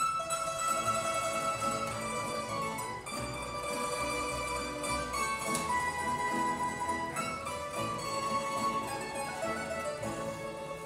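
Tamburica string ensemble with double bass playing an instrumental introduction, a tremolo-plucked melody that starts abruptly at the opening, ahead of the klapa singers' entry.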